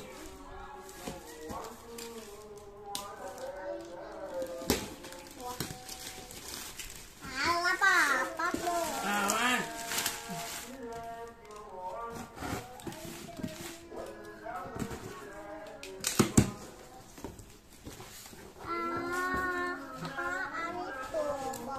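Children's voices talking and calling throughout, one rising high and wavering for a couple of seconds. Over them come the rustle of black plastic parcel wrapping being pulled off a cardboard box and a few sharp knocks of cardboard, the loudest about 16 seconds in.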